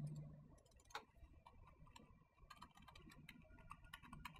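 Faint clicks of a computer mouse and keyboard: one sharp click about a second in, then a run of quick keystrokes near the end as text is typed.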